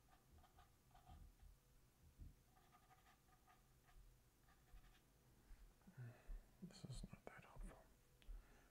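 Near silence, with faint whispered muttering that grows a little busier near the end.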